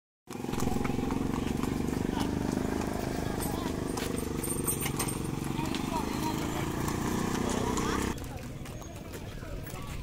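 Horse hooves clip-clopping on a road among horse-drawn carts, with voices in the background. A steady low rumble underlies it and stops abruptly about eight seconds in.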